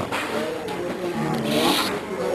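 Voices and background noise pitch-shifted by speeding up or slowing down the recording, giving warped, wavering tones.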